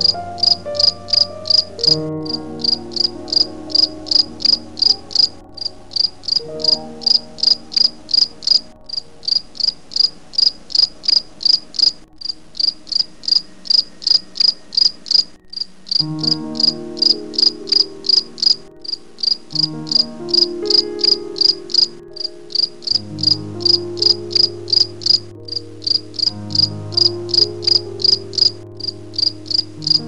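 Crickets chirping in a steady, even rhythm, about three chirps a second, over low sustained tones that shift in pitch every few seconds.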